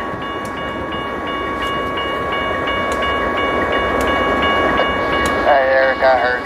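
Railroad grade-crossing bell ringing steadily at about three strokes a second, over a low rumble that grows slowly louder. A radio voice starts near the end.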